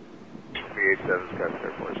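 Air traffic control radio transmission: a voice over a narrow-band aviation radio channel, starting about half a second in.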